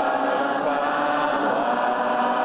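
Church choir singing a hymn in slow, held notes.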